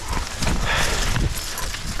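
A dog moving close to the microphone of a camera strapped to its harness: breathing and irregular scuffs of paws on dry leaves, over a low rumble of wind and jostling on the microphone.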